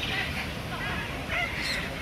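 Birds calling in several short calls that bend in pitch, one higher call near the end, with people's voices in the background.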